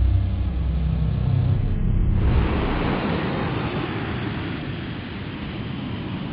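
Science-fiction spaceship engine sound effect: a deep rumble that fades over the first two seconds, giving way to a steady rushing hiss.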